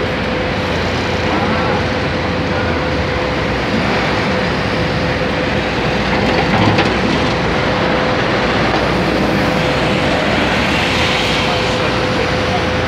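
Dense, steady din of city traffic and construction machinery around a skyscraper building site, with a steady pitched hum running throughout and a single sharp knock about halfway through.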